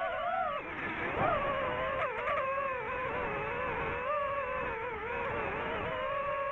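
DJI FPV drone's motors and propellers whining, the pitch wavering up and down with throttle and dipping sharply then climbing again about a second in.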